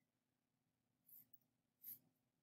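Near silence: room tone of a small room, with two faint soft rustles about a second in and near the end.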